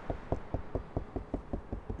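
Knuckles rapping on the dry carbon-fibre roof panel of a Nissan Skyline GT-R R34, a quick even series of about ten knocks, roughly five a second.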